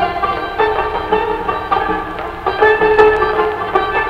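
Instrumental interlude of Azerbaijani traditional music, with plucked strings carrying the melody in separate notes about every half second.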